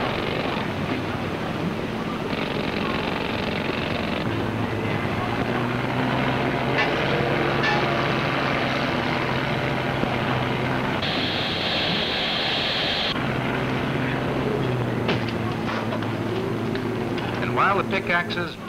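Steady demolition machinery noise: an engine running with a constant low hum under dense mechanical noise. A higher hiss comes in briefly about two seconds in and again for about two seconds just past the middle.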